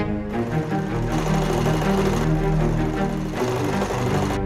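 Industrial sewing machine running steadily as it stitches a leather boot shaft, heard under background music.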